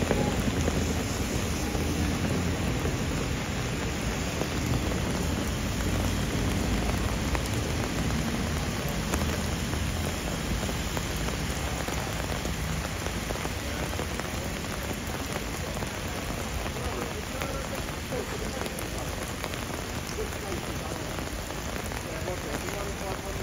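Heavy rain pouring steadily onto paving, a dense even hiss of splashing drops that eases slightly toward the end.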